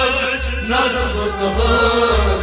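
Kashmiri Sufi song: a male voice sings a held, chant-like melody over instrumental accompaniment, with a low beat pulsing about twice a second.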